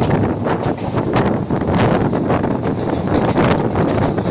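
Passenger train running at speed: a steady rumble of the train with wind buffeting the microphone at the open window in rapid, irregular gusts.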